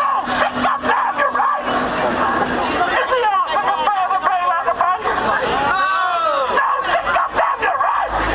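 A crowd of protesters shouting and calling out over one another, with short calls that rise and fall in pitch.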